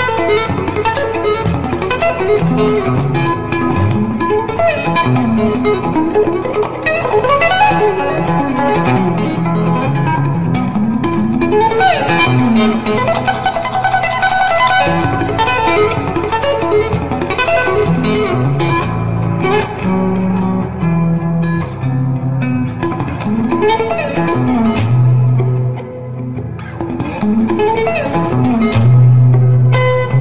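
Electric guitar playing a flowing, intricate melodic piece, mixing quick runs of notes with longer held low notes.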